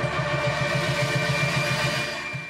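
Synthesized TV theme music: a sustained chord held over a fast, evenly pulsing low note, loud and steady.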